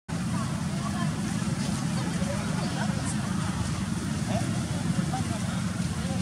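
A steady low rumble with faint, indistinct voices in the distance.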